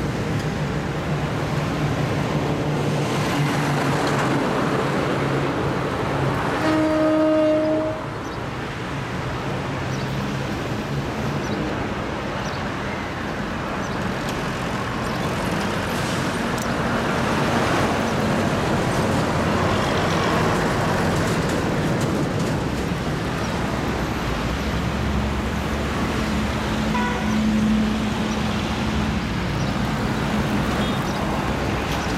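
Road traffic with lorries passing and their diesel engines running, and a single vehicle horn blast about seven seconds in, lasting about a second.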